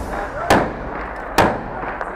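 Two gunshots about a second apart, each sharp and loud with an echoing tail, amid urban fighting.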